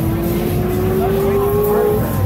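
A single voice holding one long, drawn-out note that rises slowly in pitch throughout, over the hubbub of a crowded hall.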